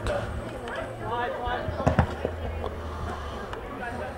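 Scattered shouting from players and spectators at a soccer game, with one sharp thud about two seconds in from a soccer ball being kicked.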